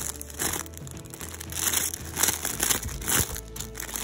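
Clear plastic bags around folded T-shirts crinkling as they are flipped through by hand on a shelf, in several short bursts.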